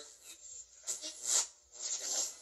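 Spirit box app on a tablet, played through a small speaker: choppy bursts of raspy static and broken sound fragments, the loudest about a second in and another starting near the end.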